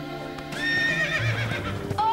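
A horse whinnies from about half a second in, a quivering call that wavers and falls, over background music.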